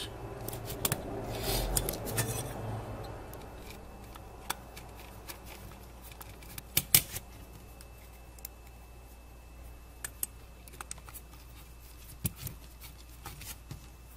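Scattered small metallic clicks and taps, with a soft rubbing in the first few seconds, as small screws and an aluminium heatsink plate are handled and the screws are started through the driver chips into the heatsink.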